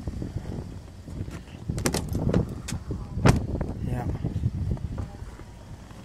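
A pickup truck's door being handled: a series of sharp clicks and knocks, the loudest about three seconds in, over a low crunching of steps on snow.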